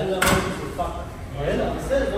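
A single sharp knock or slam about a quarter second in, followed by indistinct talking.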